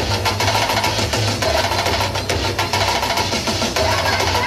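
Percussion-driven dance music with a steady drum beat and heavy bass.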